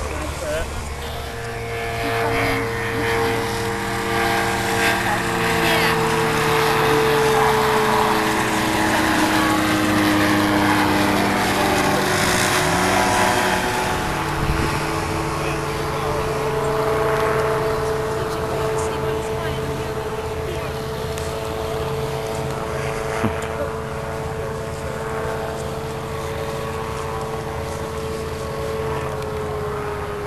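Light aircraft engines and propellers droning, with tones that slide down in pitch a few times in the first half, as when an aircraft passes, and then hold a steady drone. Loudest about a third of the way in.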